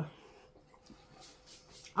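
Quiet room with a few faint, soft clicks and rustles of people eating at the table.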